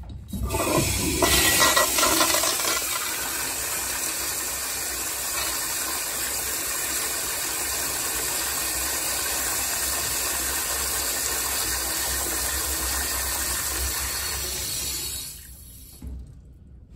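American Standard Afwall toilet flushing through its flushometer valve. A loud rush of water is loudest in the first couple of seconds, then runs steadily for about twelve seconds more and cuts off sharply near the end as the valve closes.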